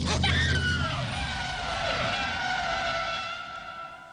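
A car's tyres screeching in a hard skid: a loud squeal that slides down in pitch and fades out over about three seconds. The engine's low hum and a sharp knock come right at the start.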